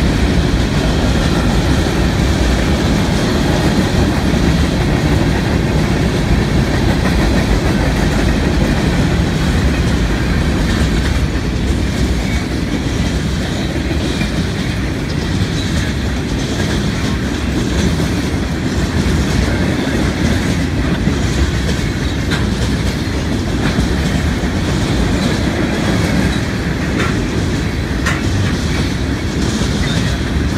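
Freight train cars, covered hoppers and then bulkhead flatcars, rolling past close by: a steady rumble of steel wheels on the rail, with a few sharp clicks in the second half.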